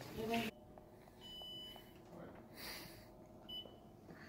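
Two faint high electronic beeps at one pitch over a quiet room: a long one about a second in and a short one near the end.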